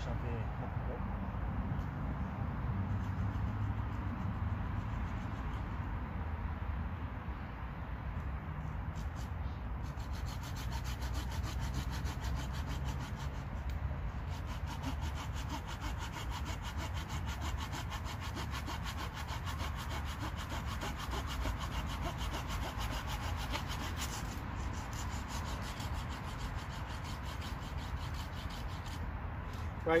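A hand saw cutting through a wooden pole resting on a stump, in steady continuous strokes, trimming the pole to length.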